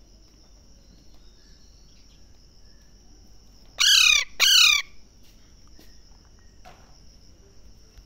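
Alexandrine parrot giving two loud calls in quick succession about four seconds in, each dropping in pitch.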